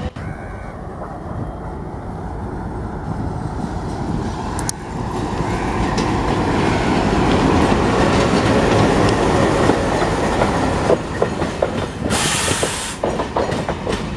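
Diesel-hauled passenger train approaching and passing close by: the locomotive's rumble grows steadily louder to a peak about eight to ten seconds in. Then the coaches follow with a run of sharp clickety-clack from the wheels crossing rail joints, and a brief burst of hiss about twelve seconds in.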